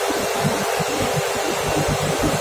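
Steady, loud industrial machinery noise: an even hiss with an uneven low rumble beneath it.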